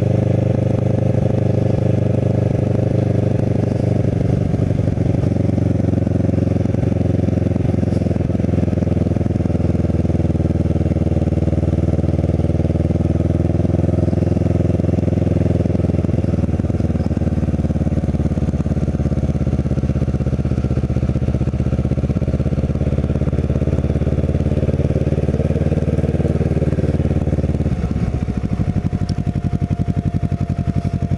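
Kawasaki Ninja 650R's parallel-twin engine running at low road speed, its note dipping and rising gently a few times, then dropping lower near the end as the bike slows.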